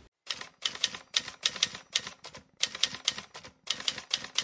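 Typewriter keys striking in quick runs, about five keystrokes a second, with two brief pauses: a typing sound effect for on-screen text being typed out.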